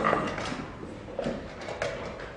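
Chess pieces set down on a board and chess clock buttons pressed in quick blitz play: several sharp, irregular knocks, with a louder, rougher sound right at the start.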